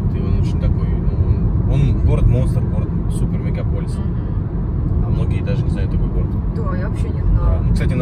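Steady low rumble of road and engine noise inside a moving car's cabin, with faint voices under it.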